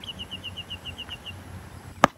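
Outdoor ambience: a bird gives a quick run of about ten high, evenly spaced chirps over the first second or so, over a low steady rumble.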